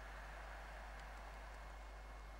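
Faint steady hiss with a low hum underneath, no distinct event: room tone.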